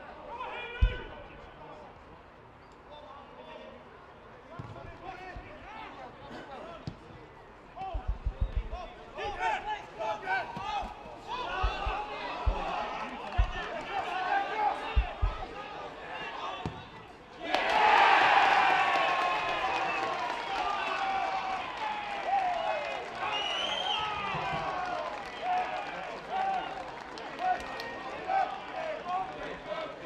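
Football match sound: shouts and scattered dull thumps of the ball being kicked. About seventeen seconds in, the crowd suddenly breaks into loud cheering at a goal, which carries on with shouting.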